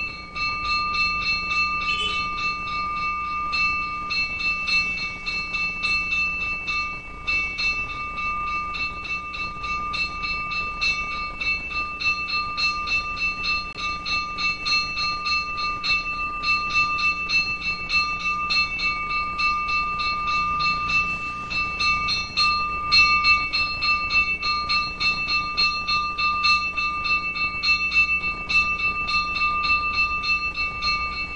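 Altar bell rung continuously during the blessing with the monstrance at Benediction, a steady high ringing of rapid, even strokes that marks the blessing with the Blessed Sacrament.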